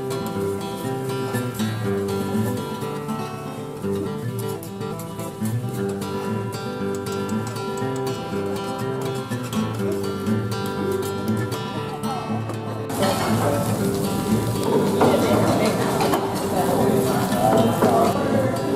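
Background acoustic guitar music. About thirteen seconds in, the noise of a busy restaurant room joins it: people chattering and dishes clinking.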